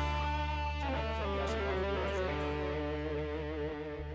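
A live band ringing out its final chord. Electric guitar notes move over a held bass note and keyboard, slowly fading.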